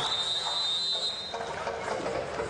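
A single high whistle blast: the tone slides up briefly, then holds steady for about a second and a half before stopping.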